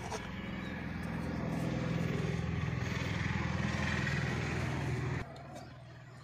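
A motor engine running steadily, swelling a little and then cutting off suddenly about five seconds in.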